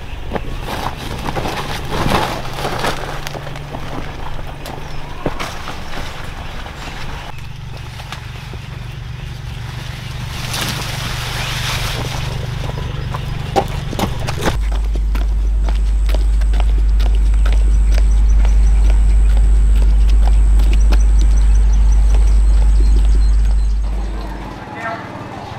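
Rustling of a woven plastic sack and footsteps among corn plants, with scattered clicks and knocks. About halfway through, a loud, steady deep rumble with a thin high whine comes in and stops at the end.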